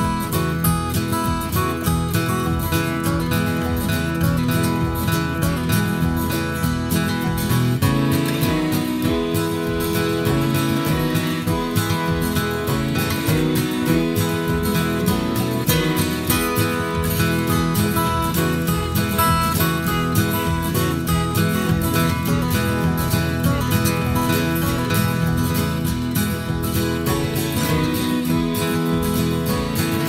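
Instrumental guitar break in an acoustic folk song: an acoustic guitar plays the melody over a steady beat, with no singing.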